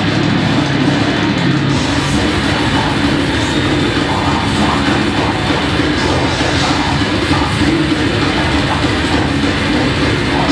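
Death metal band playing live: heavily distorted guitars and drums in a dense, unbroken wall of sound.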